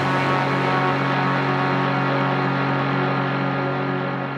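A sustained electronic chord ringing on steadily with no beat, the held final chord of the show's closing jingle, just starting to die away near the end.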